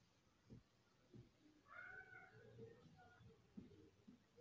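Faint taps and strokes of a marker writing on a whiteboard. About two seconds in there is a brief, high, wavering tone, and a shorter one near the end.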